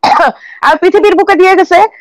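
Speech: a person's voice talking, with a short rough throat sound at the very start.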